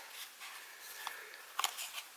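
Soft handling of paper trading cards: the cards slide against each other as a fanned hand of three is gathered into a stack, with a few faint clicks about a second in and near the end.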